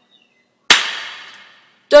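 A single sharp percussion hit about two-thirds of a second in, ringing out and fading away over about a second.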